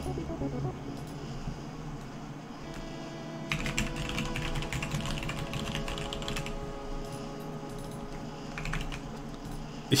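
Typing on a computer keyboard: a quick run of keystrokes from about three and a half to six and a half seconds in, with a few scattered keys later.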